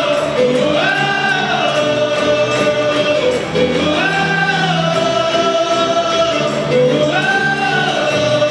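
A live band with several voices singing together over acoustic guitars, djembe hand drums and a steady percussion beat. The melody rises and falls in a phrase that repeats about every three seconds.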